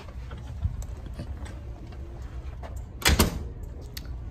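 A cabin door shutting, with a couple of sharp latch knocks about three seconds in, over a low steady rumble and faint scattered clicks.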